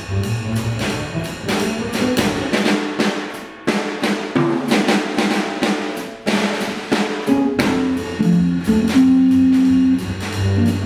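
Jazz drumming on a Gretsch drum kit, with snare, bass drum and cymbal strokes packed throughout. Pitched accompaniment notes sound underneath, ending in a loud held note over the last second.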